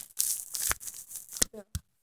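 Rustling and rubbing handling noise on a phone's microphone, with a few sharp clicks: one below the middle and two more about a second and a half in.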